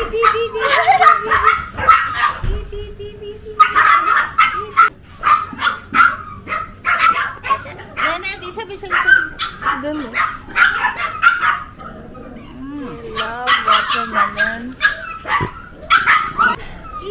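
Indian Spitz puppies yipping and barking in quick runs of short, high yaps while jumping up for watermelon held out to them, with a held whine near the start.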